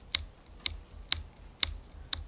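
A steady ticking: sharp clicks at an even beat of about two a second, each with a soft low thump.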